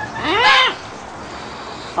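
A young green-winged macaw gives one short call, rising and falling in pitch, about half a second long, shortly after the start.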